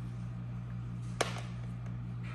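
A light tap about a second in, with a fainter one just after, over a steady low hum.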